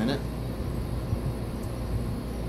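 Home Decorators Collection Mercer ceiling fan running on medium speed: a steady, even rush of air from the spinning blades.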